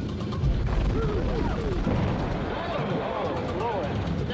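A deep explosion boom about half a second in, followed by continuing low rumble, with swooping, gliding tones over it.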